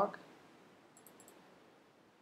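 A few faint, quick computer mouse clicks about a second in, a double-click opening a file in the code editor.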